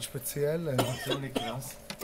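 Men talking in conversation, with a short cough right at the start.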